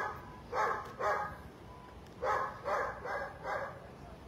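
A dog barking in two runs: three barks about half a second apart, a pause of about a second, then four more.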